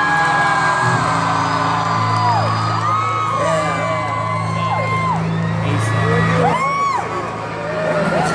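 Live concert music from the arena PA, held low synth notes with no vocal, under a crowd whooping and cheering; the low notes drop away about six and a half seconds in, leaving mostly crowd voices.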